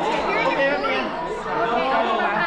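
Several people talking at once: overlapping chatter of a small group in a room.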